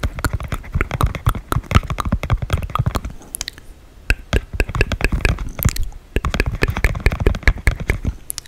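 Dry ASMR mouth sounds close to the microphone: rapid wet-less tongue and lip clicks and smacks, many a second, with a short lull near the middle.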